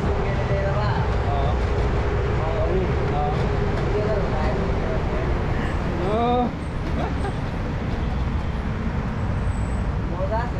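Steady engine and road rumble of a moving BRTC bus, heard from inside, with people's voices over it; one voice rises briefly about six seconds in.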